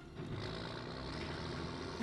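Car engine running steadily in a film soundtrack, setting in about a fifth of a second in.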